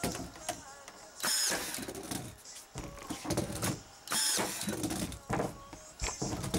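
Ryobi cordless drill driving screws into 2x4 lumber in short runs. The motor whines up in pitch on each run, the two longest about a second in and about four seconds in.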